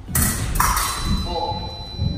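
Fencing blades clash just after the start with a sharp metallic ring, followed by a steady high tone lasting about two seconds: the electric scoring box signalling a touch.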